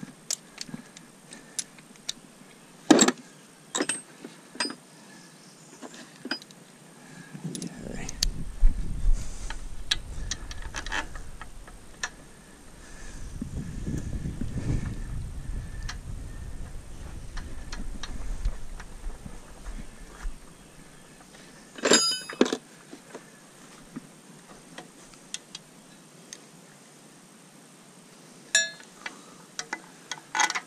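Metal hand tools clinking: a socket and extension being handled and fitted onto the lower-unit bolts of an outboard, with a few sharper ringing clinks, one about three seconds in and another two-thirds of the way through. A low rumble runs through the middle for about twelve seconds.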